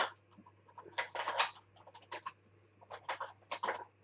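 Craft supplies being handled and sorted on a desk: a run of short scratchy rustles and clicks, bunched about a second in and again around three seconds in.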